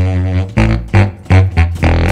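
Tubax (contrabass saxophone) playing a low, rhythmic bass line: a held note at first, then short punchy repeated notes, about two to three a second.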